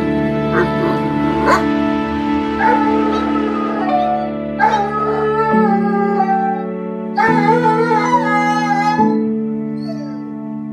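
A dog whining and yelping over background music with sustained chords: a few short yelps in the first two seconds, then three longer wavering whining cries.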